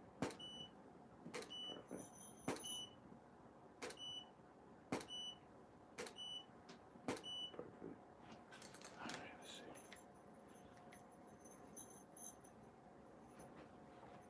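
Camera shutter clicking about once a second, seven shots in a row, most followed by a short high beep from the studio flash as it signals it has recycled and is ready. In the second half the shots stop and only faint ticks and a faint steady tone remain.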